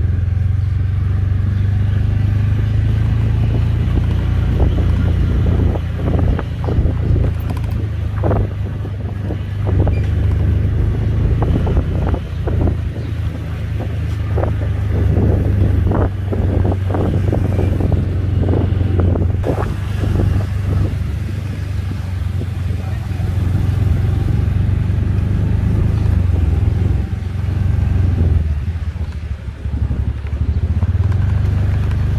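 Steady low rumble of a car driving along a street, heard from inside the car: engine and tyre noise.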